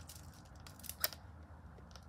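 Light clicks from a Blythe doll's pull-string eye mechanism as its eyes are switched to another colour, with one sharper click about a second in.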